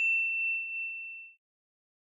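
Tail of a single high, clear bell-like ding from a channel logo sting, ringing out and fading away a little over a second in.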